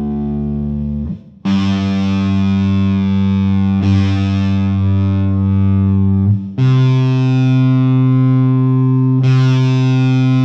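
Distorted electric guitar sounding single open strings as tuning reference pitches, with the guitar tuned down a whole step plus about 40 to 50 cents. Each note is picked, left to ring and picked again before being cut off; a higher string takes over past the middle.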